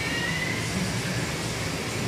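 Steady low mechanical hum with an even hiss, the running noise of aquarium pumps and air handling in a fish shop.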